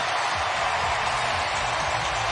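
Large ballpark crowd cheering steadily after a home run.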